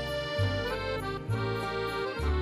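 Background music: held chord notes over a bass line that changes about once a second.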